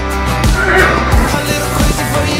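Background music with a beat, and a horse whinnying briefly about a second in.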